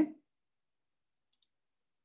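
Near silence after a spoken word trails off at the start, broken by one faint, very short click about a second and a half in.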